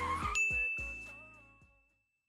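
End of an outro jingle: a bright bell-like ding about a third of a second in rings on as the music fades out.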